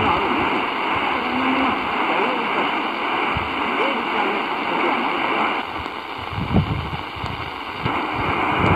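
Tecsun PL-450 portable receiver's speaker playing a weak mediumwave AM station on 846 kHz: faint speech buried in steady hiss and static. Past the middle the noise changes as the radio is retuned to 819 kHz, with a few low thumps.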